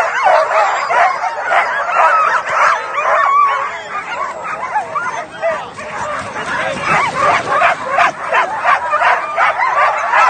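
Many harnessed sled dogs yelping and barking all at once in a dense, continuous clamour, the excited din of a team eager to run at a race start. It eases a little midway, then builds again.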